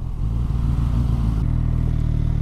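Suzuki GSX-S1000's inline-four engine running steadily at low revs as the bike slows and rolls onto a dirt track, with a wash of wind and road noise over it.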